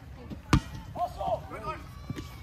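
A rubber kickball kicked once: a single sharp, hollow thud about half a second in, followed by players' shouts.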